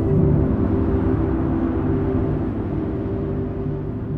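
Ambient film score of sustained low drones over a deep rumble, swelling just after the start and then slowly fading.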